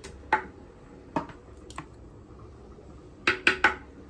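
Wooden pestle striking food in a wooden mortar: six knocks, three spaced out and then three in quick succession near the end.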